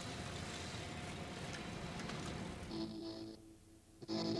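Steady outdoor background noise. About three quarters of the way in it gives way to a short distorted electric guitar chord that stops after about half a second.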